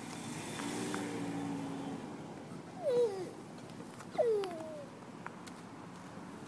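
Cat meowing twice: two short calls, each falling in pitch, about a second and a half apart.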